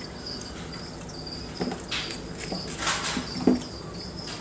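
Crickets chirping in a steady, high, pulsing trill. In the second half come a few soft rustles and knocks of hands moving in a plastic tub lined with newspaper.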